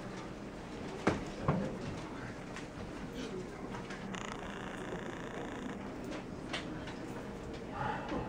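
Quiet room sound with no playing, broken by two sharp clicks about half a second apart a second in, and a faint hiss that starts about four seconds in and stops near six seconds.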